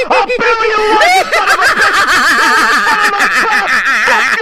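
A voice laughing hard and without pause, in rapid repeated pitched bursts, as a cartoon character cackles at his own prank.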